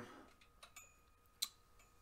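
Near silence with a few faint, sharp clicks, the clearest about one and a half seconds in.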